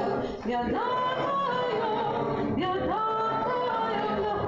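A woman's voice singing a slow liturgical melody, holding long notes and sliding up into each new phrase, with a short breath about half a second in.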